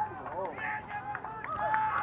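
Faint, distant shouting voices: short calls that rise and fall or are held briefly.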